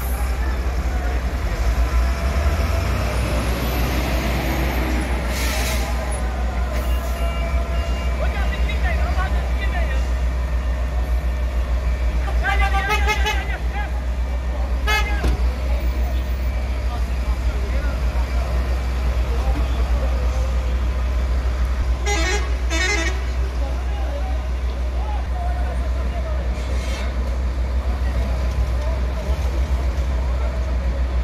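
Fire-scene street noise: heavy emergency vehicles running with a steady deep rumble and background voices. There are two short warbling vehicle-horn blasts, about 13 seconds in and again about 22 seconds in.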